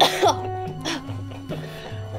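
A woman gasps and coughs over background music with a repeating bass line. The loudest burst comes right at the start, and a second cough comes about a second in.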